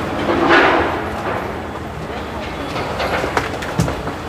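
Street traffic noise, with a vehicle passing close by about half a second in. A few sharp clicks near the end.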